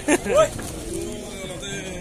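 Men's voices: a short burst of speech near the start, then faint background talk.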